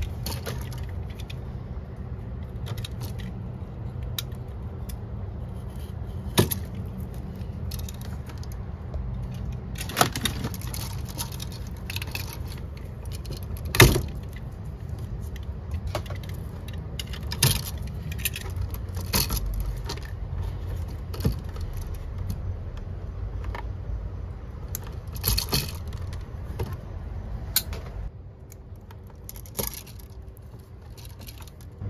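Hands working electrical wire and hand tools at a switch box: scattered sharp clicks and snips with light metallic jingling of wire and switch hardware, the loudest click about halfway through. A steady low rumble runs underneath and stops about two seconds before the end.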